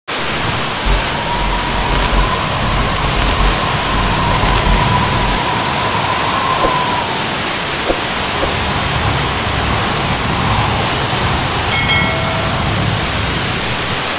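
Waterfall, a steady, loud, even rush of falling water. A faint thin high tone sits on top through the first half, and a short tone sounds near the end.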